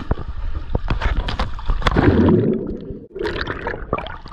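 Pool water splashing and sloshing against a camera held at the surface, with many sharp slaps of water on it and a stretch of muffled, low bubbling gurgle about two seconds in.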